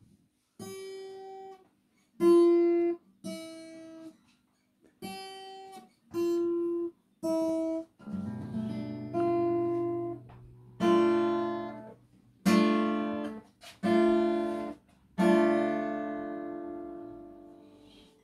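Acoustic guitar playing a song's introduction: single strummed chords, each left to ring and fade, with short silences between them at first. From about eight seconds in, fuller, louder strums come about every second and a half and ring into one another.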